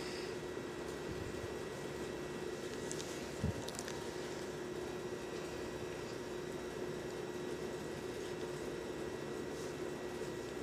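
Steady background hum and hiss with a faint constant tone, and one soft low thump about three and a half seconds in.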